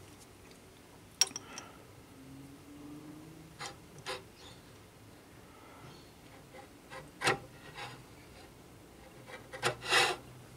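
A copper tube handled against a steel machine vise and the point of a scribing block: scattered light clicks and knocks, with faint scraping between them. The loudest knocks come about seven seconds in and just before the end.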